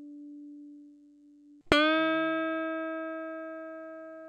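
Electric guitar with a Wilkinson WOV04 tremolo bridge: a single note fading out, then a fresh note plucked about halfway through that rings on with a long, slow decay. These are test notes for comparing the sustain of a thin and a thick pot-metal tremolo block.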